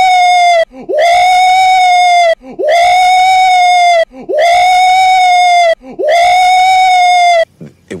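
A man screaming in excitement, a high held yell repeated over and over with identical shape. One scream ends just after the start, then four more follow, each scooping up quickly and held steady for about a second and a half with short gaps between, the last cutting off about half a second before the end.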